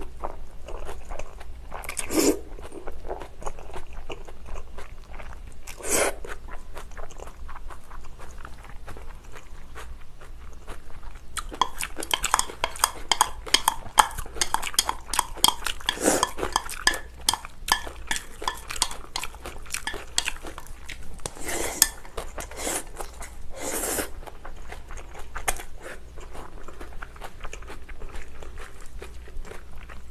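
Close-up eating sounds of spicy bibim noodles (wheat somyeon and Chinese glass noodles) being slurped and chewed, with a handful of short loud slurps. A long stretch of quick, crunchy, wet chewing runs through the middle, with chopsticks now and then on a glass bowl.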